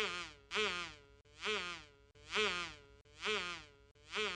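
Cartoon buzzing sound effect of a small flying bug, coming in repeated swells about once a second, each wavering up and down in pitch.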